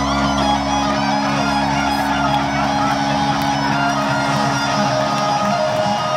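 Live electric guitar solo on a Les Paul-style guitar through a stadium PA: sustained, bent and sliding lead notes over held low notes, heard from the stands of a large arena.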